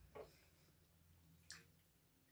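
Near silence with faint eating sounds: a soft click about a quarter second in and a sharper, brighter click about a second and a half in.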